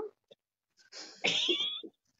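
A person's high-pitched, cat-like vocal squeal, about a second long and rising in pitch, starting about a second in.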